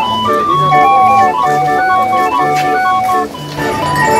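Hand-cranked wooden street organ playing a jaunty tune, its melody in clear held notes over an even oom-pah bass, with a brief dip in loudness near the end.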